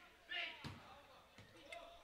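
Faint shouts of players on a seven-a-side football pitch, with a single thud of the ball being kicked on artificial turf about two-thirds of a second in.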